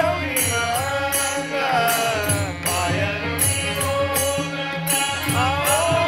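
Men singing a Hindu devotional bhajan together, with a low sustained accompaniment and a regular percussive beat.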